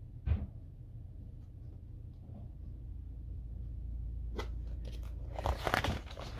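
Pages of a picture book being handled and turned: a single knock just after the start, then paper rustling and crinkling near the end, over a low steady hum.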